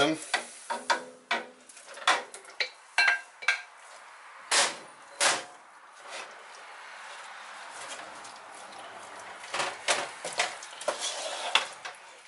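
Wooden spoon knocking and scraping shredded venison out of a glass bowl into a pot of barbecue sauce, a quick string of sharp knocks. After that the spoon stirs the meat through the thick sauce, with softer scraping and a few more knocks against the pot near the end.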